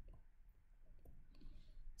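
Near silence with a few faint clicks of a stylus tapping on a tablet screen while writing.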